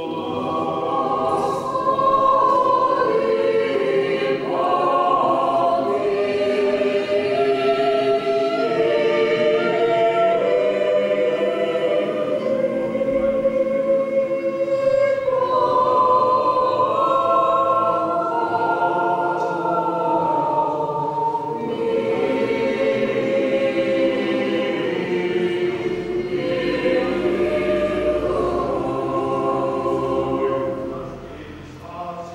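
A small mixed choir of women's and men's voices singing an Orthodox liturgical hymn a cappella, in held, multi-part phrases with short breaths between them.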